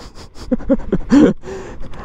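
A man laughing in a few short bursts, then a breathy exhale.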